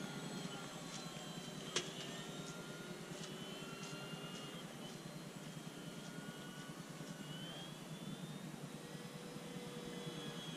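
Faint whine of two electric-powered RC warbird models in flight, an FMS F4U Corsair and an E-flite P-47, heard from the ground. Their motor and propeller tones drift slowly up and down in pitch as the planes move about the sky. A single sharp click comes just under two seconds in.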